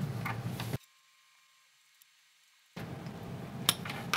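Faint handling noise of a small screwdriver and a plastic wire terminal block being worked, with one sharp click near the end. In the middle the sound cuts out to dead silence for about two seconds.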